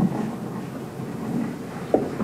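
Handling noise from a handheld microphone being carried across the room and held out to a questioner: a low rumble with a sharp bump at the start and another just before the end.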